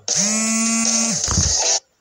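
A man's voice holding one loud, drawn-out note for about a second, a shouted exclamation at a steady pitch. Near the end it breaks into a rougher, distorted sound and cuts off suddenly.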